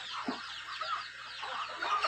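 A flock of hens clucking and making many short, high, falling peeping calls as they feed.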